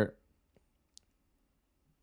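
The end of a man's spoken word, then near silence with two faint short clicks about half a second apart.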